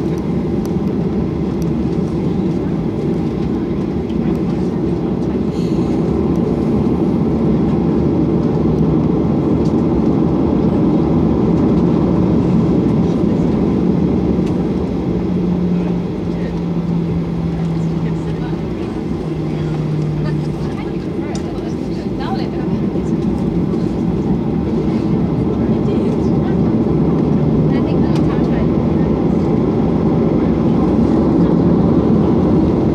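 Cabin noise inside a Ryanair Boeing 737 taxiing: a steady rush of the jet engines with a low hum whose pitch drops a step a little past the middle, then returns.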